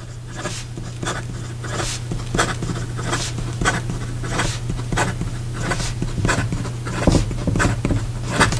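Fine steel nib of a PenBBS 308 fountain pen scratching across paper in a quick run of short strokes during fast writing, with the ink flowing without trouble. A steady low hum runs underneath.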